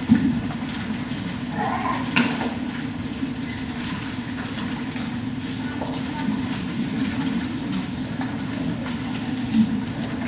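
Steady low rumbling hum of room noise in a church, with a sharp knock about two seconds in and a few faint shuffles.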